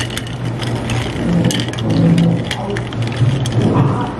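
A long metal spoon stirring iced drinks in glass cups: ice cubes and spoon clinking against the glass in quick, irregular clicks, over a steady low hum.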